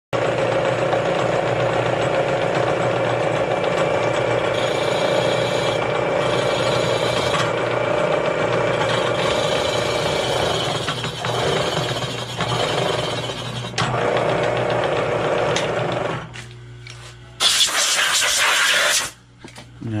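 Milling machine cutting into an aluminium VW 113 cylinder head, a steady loud machining noise over a motor hum, recutting the combustion chamber to remove its step for a semi-hemi shape. Near the end the cutting stops, leaving a low hum, then comes a loud hiss lasting about a second and a half.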